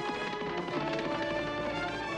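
Background music from the cartoon's score, with sustained pitched notes.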